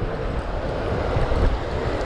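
Ocean surf washing in the shallows, a steady rush of water, with wind rumbling on the microphone.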